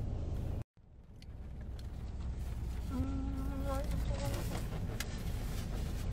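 Steady low rumble of a car's cabin, cut off completely for a moment just under a second in and then fading back. About three seconds in comes a short hummed voice lasting under a second, with faint small clicks after it.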